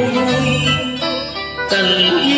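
Instrumental karaoke backing music of a Vietnamese tân cổ song, played in a gap between sung lines, with a held chord in the second half.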